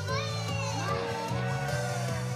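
Japanese idol pop song played through stage PA speakers, with female voices singing into microphones over a steady bass line.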